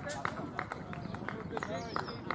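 Cricket fielders calling encouragement between deliveries, with short sharp claps about four a second and indistinct shouts.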